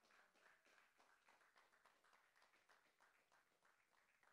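Near silence, with very faint, scattered audience clapping.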